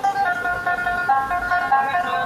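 Live Baul folk music: a melody of short, steady held notes stepping up and down in pitch.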